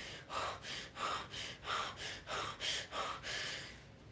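A woman breathing quickly and audibly, six or seven short breaths in a row, about two a second, as she tries to calm an anxiety attack.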